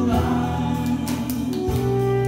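A live band playing a song while a woman sings, with acoustic guitar, keyboard, saxophone, bass guitar and drums; sustained notes over a steady beat.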